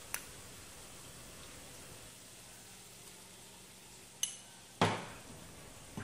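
A metal spoon clinks against a ceramic bowl with a short ringing tone a little past four seconds in, then a louder, duller knock of kitchenware follows about half a second later. Otherwise only a faint steady hiss, with a small click at the very start.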